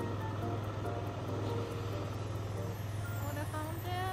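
Steady low hum of an idling engine, with faint background music notes over it that grow clearer near the end.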